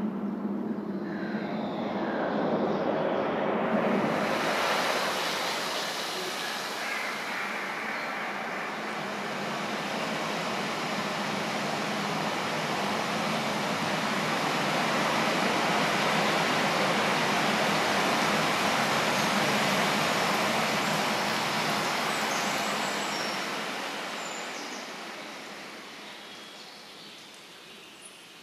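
Rushing waterfall played through the exhibition's speakers with a waterfall projection: a steady rush of water that swells up about four seconds in and fades away near the end.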